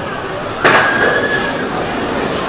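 Skyrush roller coaster train rolling out of the station onto its lift hill, with a sudden loud rush about half a second in that carries a steady high tone for about a second.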